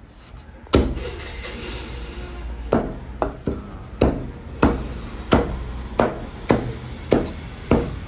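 Meat cleaver chopping raw chicken on a wooden chopping block: about eleven sharp chops. The first and loudest comes about a second in, and after a pause the chops fall steadily, roughly one every half second or so.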